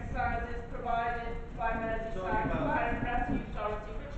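Speech only: a person speaking continuously over a public-address microphone, with a low rumble underneath.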